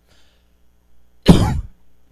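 A single loud cough from a man, close to a handheld microphone, about a second and a quarter in.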